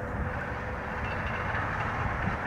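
Steady outdoor background noise, an even hiss-like rumble like distant traffic or wind, with no distinct events.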